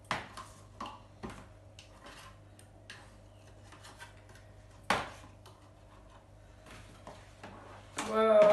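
Scattered light clicks and taps of marbles and a plastic spoon against plastic paint pots and a plastic tray, with one sharper knock about five seconds in.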